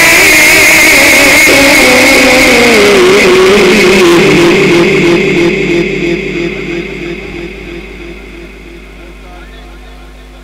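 Quran reciter's voice holding one long melismatic note with a wavering vibrato. The pitch slides down about three seconds in, and the note then fades away over the second half.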